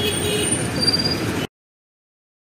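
Roadside traffic noise with a faint voice in it, cutting off abruptly to silence about one and a half seconds in.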